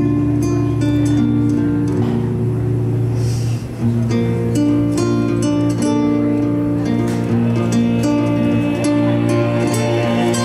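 Fingerpicked acoustic guitar playing a melodic pattern over long, held low cello notes: the instrumental introduction of a slow folk song.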